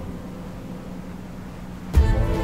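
Film soundtrack dropping to a soft, steady hiss-like ambient bed with a faint held low tone. Near the end a sudden deep cinematic boom hits as the music comes back in.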